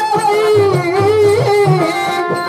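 Live Tamil stage-drama song: a high, ornamented melody line wavering up and down over regular drum beats, with hand cymbals in the ensemble.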